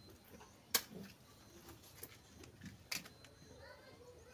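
Faint handling of a small LPG gas cylinder burner, with two sharp metallic clicks about two seconds apart and a few soft knocks.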